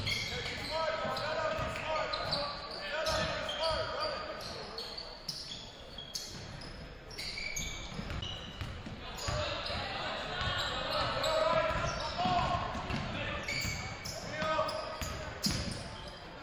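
Basketball game on a hardwood gym floor: the ball bouncing as it is dribbled, sneakers squeaking in short high chirps, and players and spectators calling out and talking.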